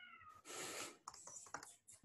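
A faint cat meow, one short call falling in pitch, followed by a brief rustle and a few faint clicks.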